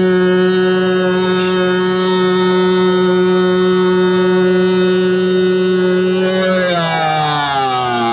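A man's voice, amplified through a handheld microphone and portable loudspeaker, holding one long sung note at a steady pitch for about seven seconds, then sliding down near the end into a moving chanted line.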